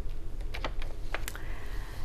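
A handful of light, sharp clicks and taps, spaced irregularly over about a second, over a steady low hum; a faint thin tone sounds in the second half.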